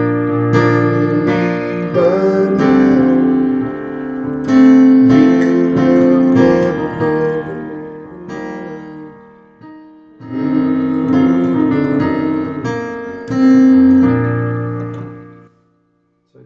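Digital keyboard on a piano voice playing a slow progression of sustained chords, with a brief break about ten seconds in, stopping just before the end.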